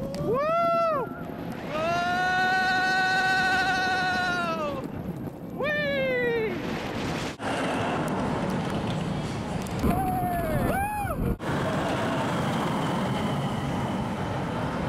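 Roller-coaster riders whooping and screaming over the rushing noise of the ride: a "woo!", then a long high scream held about three seconds, a shorter one, and another short scream about two-thirds of the way through.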